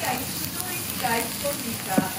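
Slices of wild boar meat and fat sizzling steadily on a hot stone grilling slab.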